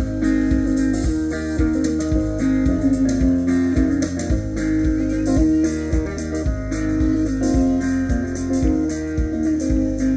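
Live music: an acoustic guitar strummed through an instrumental passage over a steady beat.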